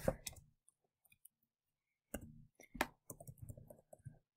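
Faint typing on a computer keyboard: a single keystroke at the start, then, after a pause of about a second and a half, a quick run of keystrokes as a formula is typed in.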